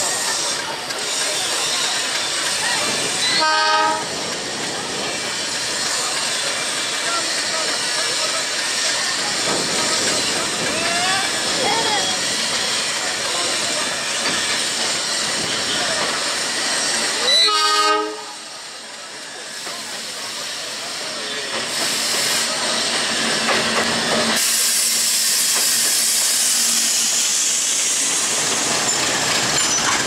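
Diesel locomotive horn sounding two short blasts, a few seconds in and again about halfway through, over the steady noise of a busy station and train running. After the second blast the noise briefly drops, then comes back as a louder steady hiss.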